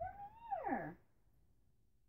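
A small dog whining once: a short, high call that holds briefly and then slides steeply down in pitch, over in under a second.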